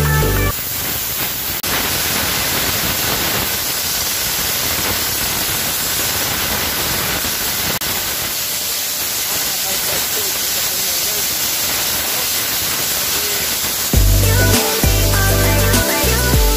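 Steady hiss of a steam cleaning jet at a steam car wash. Electronic dance music stops about half a second in and comes back near the end.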